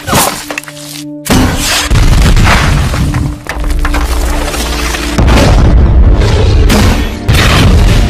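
Action-film battle soundtrack: score music over loud booms, crashes and shattering. About a second in, everything drops out briefly; then a heavy blast comes in, and two more heavy hits follow later.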